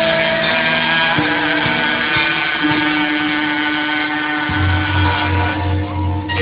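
Javanese gamelan playing wayang kulit accompaniment: held pitched tones stepping from note to note over light low strokes. About four and a half seconds in, a deep gong is struck and its low hum throbs about twice a second.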